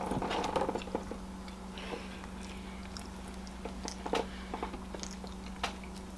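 Close-miked chewing: wet mouth clicks and smacks of eating pancakes and sausage, thickest in the first second and sparse after, over a steady low electrical hum.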